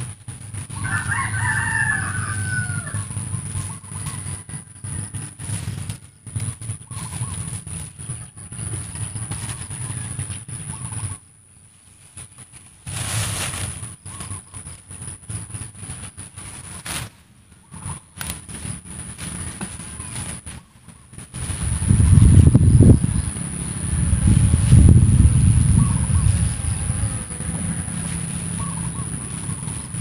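A rooster crows once, about a second in. Low rumbling noise on the microphone runs underneath and is loudest for several seconds in the last third.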